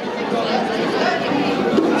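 Crowd chatter: many voices talking at once, with no single speaker standing out.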